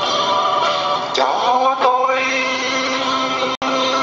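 A song with a singing voice over instrumental backing, a long note held through the middle; the sound cuts out for an instant near the end.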